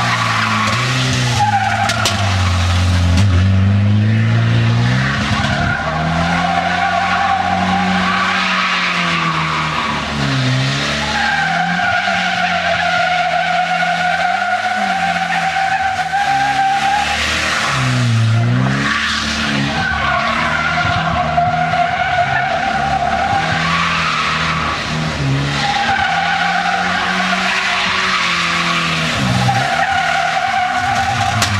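Car driven hard through a slalom on tarmac: the engine revs rise and fall with each turn, and the tyres squeal in several long drawn-out squeals, the longest about six seconds.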